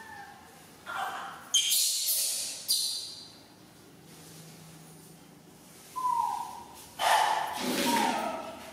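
Baby macaques calling: short, shrill cries about one and a half and three seconds in, then a single falling coo around six seconds and a louder cry near the end.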